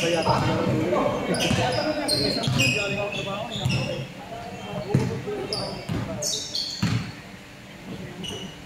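Basketball game play in an echoing gym: sneakers squeaking in short high-pitched chirps on the hardwood floor, a basketball bouncing with a few sharp thuds, and players' voices calling out.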